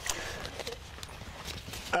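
Faint talk from a small group over a low, uneven background noise, with a few soft knocks.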